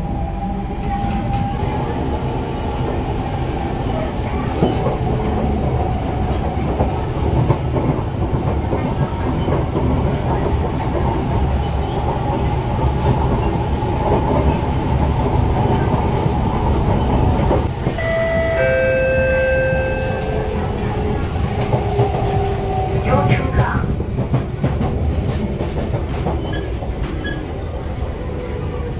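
Inside a Singapore MRT train on an elevated track: the steady rumble of wheels on rail with the whine of the electric motors. A few short steady tones sound about 18 seconds in, and a falling whine follows as the train slows.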